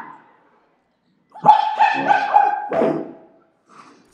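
A dog barking and yelping: a quick run of short, high yelps starts about a second and a half in and ends in a rougher bark.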